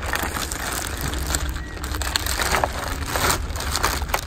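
Clear plastic bag crinkling and rustling as a hand-held air pump with a corrugated hose is worked out of it, in irregular crackly handfuls.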